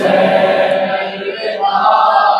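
A group of men's voices chanting a nauha, the unaccompanied Shia lament of mourning for Imam Hussain, in long drawn-out held notes. A fresh phrase begins about one and a half seconds in.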